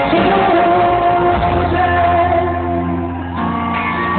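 Live pop-rock band playing with singing in a large arena, recorded from among the audience, with shouts from the crowd over the music.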